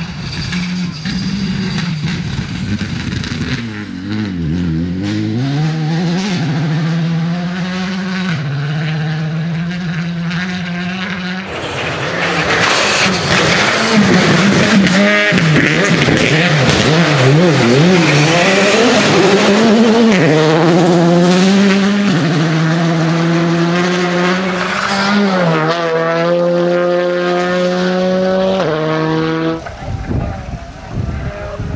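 Skoda Fabia rally car's engine at full throttle on the stage, climbing in pitch and dropping sharply at each upshift, several times over. In the middle stretch it passes close and loud, with a rush of tyre and loose-surface noise over the engine.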